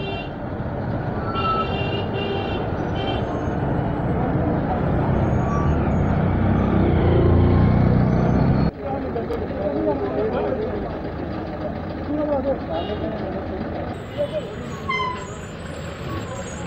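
Heavy diesel goods trucks driving past in a convoy, their engine noise growing louder over several seconds, with a few short high beeps about two seconds in. The sound cuts off abruptly about halfway through, after which quieter traffic noise continues with people's voices in the background.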